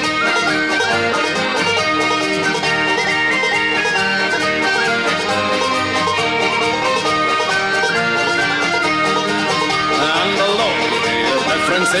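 Instrumental break in a Scottish folk song: plucked banjo and guitar under a lead melody line, with singing coming back in at the very end.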